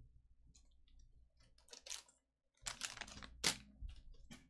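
Trading cards being picked up off a mat and squared into a stack: a few faint clicks, then several short scraping slides of card stock in the second half, the sharpest just before the end.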